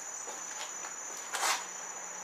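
A steady high-pitched whine, with one short breathy hiss about one and a half seconds in.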